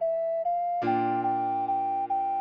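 An ocarina melody over sustained piano chords: the tune steps up from E to F, then repeats G in short even notes as the chord changes from F major to B-flat major a little under a second in.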